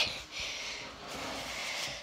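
A person's breath close to the microphone: one long, steady breathy hiss lasting about a second and a half.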